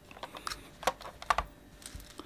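A few sharp plastic clicks and taps as a white Tanita folding kitchen scale is handled, set down and opened out on a cloth-covered table.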